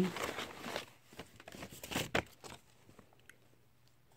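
Brown paper lunch bag and plastic packaging crinkling and rustling as items are handled, strongest in the first second, then a few scattered light clicks and rustles that die away.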